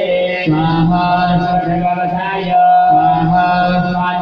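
Voices chanting Hindu Sanskrit mantras in a continuous recitation, with one note held steady from about halfway through.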